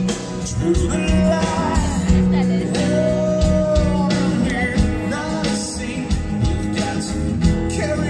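A song sung to acoustic guitar, with the voice's pitch rising and falling over a steady strummed accompaniment, amplified through a PA speaker.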